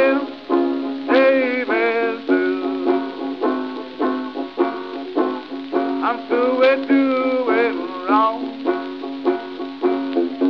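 Six-string banjo playing a blues instrumental break between sung verses: a steady run of plucked notes over a ringing bass note, on an old recording with dull, muffled highs.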